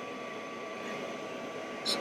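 Steady whir of a laser enclosure's air exhaust fan and air-assist pump, with a thin steady tone over it. A brief high scuff near the end as the foam sheet is handled.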